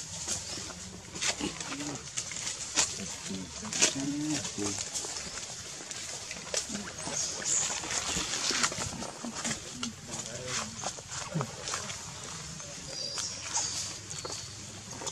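Dry leaf litter crackling and rustling as macaques shift and move on it, in many short irregular crackles, with a few brief low vocal sounds in the first few seconds.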